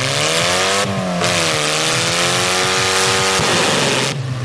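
Ford Escort's engine held at high revs during a burnout, the wheels spinning and smoking against the ground with a steady hiss. The revs climb at the start, sag a little, hold, and then drop sharply near the end as the throttle comes off.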